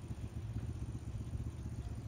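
A steady, low engine rumble, idling or running evenly, with no change in pitch.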